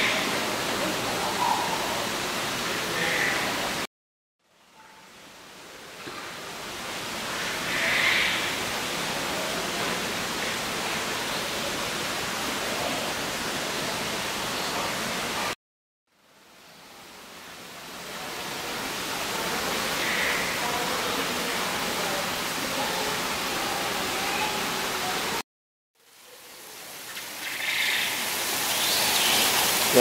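Steady rushing hiss of falling water from an indoor waterfall, with a few brief high chirps over it. The sound cuts to silence three times and each time fades back in over a second or two as recording restarts.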